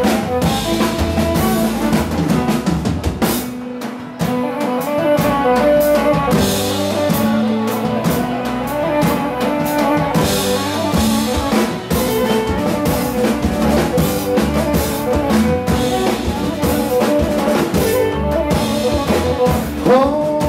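Live Pontic Greek dance music from a band, playing an instrumental passage: drums and percussion keep a steady beat under an amplified melody.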